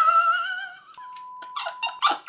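A man's high-pitched, squealing laugh that wavers for about a second. It gives way to a steady electronic beep lasting about a second, with short bursts of laughter over its end.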